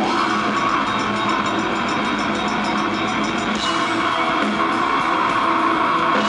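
Metal band playing live: loud distorted electric guitars over drums, dense and continuous.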